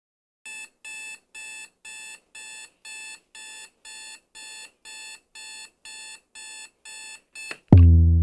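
Electronic alarm beeping: a high-pitched beep repeated about twice a second, around fifteen times, then stopping. Just before the end, loud bass-heavy music starts abruptly.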